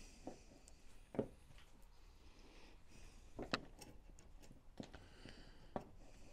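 A few faint, scattered clicks and knocks of metal track links, pin and washer being handled on a model tank track, the sharpest about three and a half seconds in.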